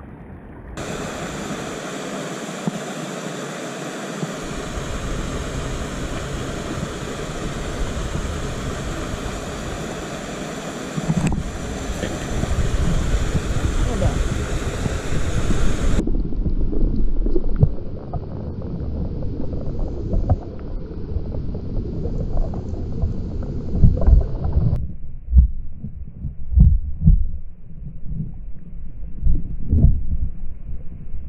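A shallow rocky mountain stream running, a steady rush of water. About halfway through the sound turns dull and muffled, heard from under the water, and near the end it is mostly low thuds and knocks.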